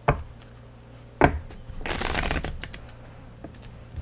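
Tarot cards being shuffled by hand at a table: two sharp knocks about a second apart, then a riffle of cards lasting about half a second, and another knock near the end.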